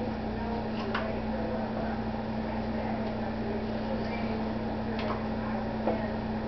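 A steady low hum, with a few faint light taps as a spoon scoops cottage cheese from a plastic tub and drops it onto a pizza.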